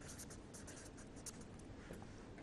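Faint scratching of a marker pen writing on paper, a quick run of short strokes.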